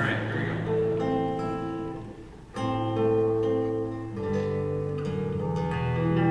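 Classical guitar playing a melodic passage of picked notes, with a brief pause about two and a half seconds in before the playing resumes; a lever harp joins in near the end.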